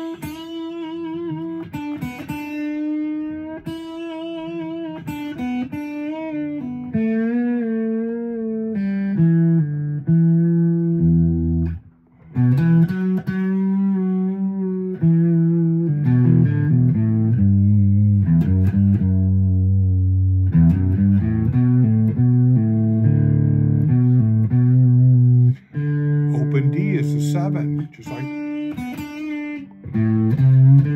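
Thinline Telecaster-style electric guitar playing single-note blues phrases in E minor around the open position, with vibrato on some held notes. There is a brief gap about twelve seconds in, and the lower notes that follow are louder.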